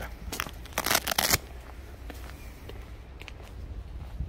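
Crunching and rustling of footsteps through dry ground and weeds, loudest as a cluster of crackling bursts in the first second and a half, then quieter rustling over a low rumble.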